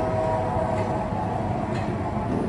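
Steady train-like rumble with a few held tones that fade out about a second in.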